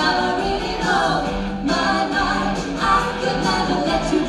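Live pop band on stage: two women singing a melody in harmony, with band accompaniment of keyboard and electric guitar underneath.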